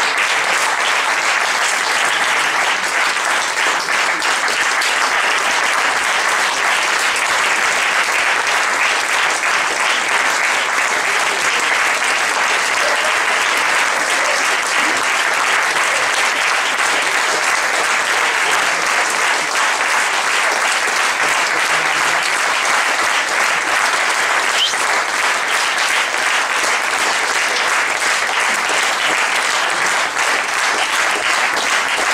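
Theatre audience applauding: dense, steady clapping from many hands that holds at an even level throughout.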